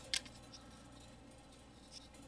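Quiet room tone with one short, sharp click just after the start and a faint tick near the end, as three closed folding knives held together are shifted in the hands.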